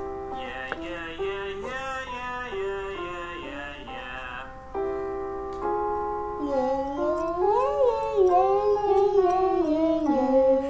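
A keyboard plays held notes of a vocal exercise, stepping from pitch to pitch, while a boy sings along. His voice slides and wavers, louder in the second half.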